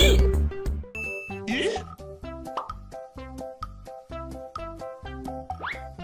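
Light, playful children's-style background music with short repeated notes in a steady rhythm, after a louder bass-heavy passage cuts off within the first second. Quick rising whistle-like glides, boing-style sound effects, come about a second and a half in, again around two and a half seconds, and near the end.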